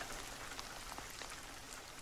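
Faint steady rain: an even hiss with scattered small ticks of drops.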